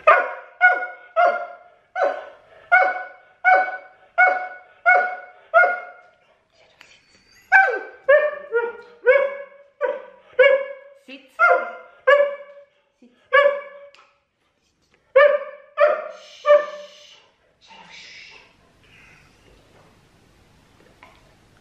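Siberian husky barking in a steady series of short, pitched barks, about three every two seconds, in three bouts with short pauses between.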